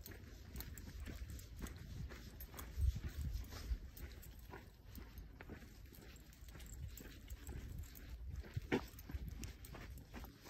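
Footsteps on a snow-patched dirt trail: uneven soft crunches, with a louder step about three seconds in and another near the end, over a low rumble.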